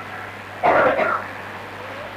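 A man's voice making one brief sound, about half a second long, just over half a second in. A steady low hum runs under it.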